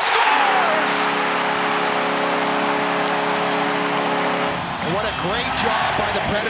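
Arena goal horn sounding one sustained chord for about four and a half seconds over a loudly cheering crowd, marking a home-team goal. The horn cuts off near the end, leaving the crowd cheering and whooping.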